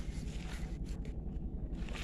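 Quiet outdoor background: a steady low rumble with faint wind noise on the microphone, between blasts of a toy trumpet.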